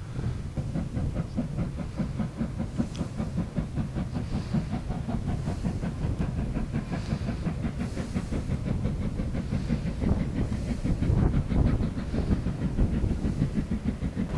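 Steam locomotive hauling a train of coaches, puffing away steadily in a rapid, even beat.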